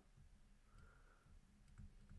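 Near silence: faint room tone with a few soft clicks and taps from a stylus writing on a drawing tablet.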